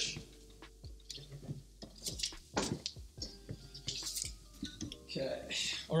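Scattered light knocks and clicks from off-camera handling as a net bag of lemons is fetched from a kitchen fridge. A man's voice comes in near the end.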